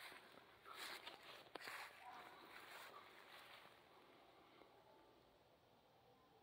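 Near silence: a faint outdoor hiss with a soft click about a second and a half in, fading out after about four seconds into complete silence.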